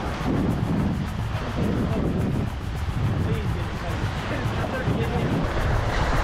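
Wind buffeting the microphone in an irregular low rumble over the wash of surf breaking on jetty rocks.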